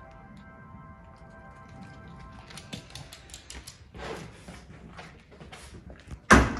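Faint background music with steady held notes for the first couple of seconds. Then comes a run of light, irregular clicks with a few soft rustles: a small dog's claws on a hard floor as it comes indoors and onto a footstool.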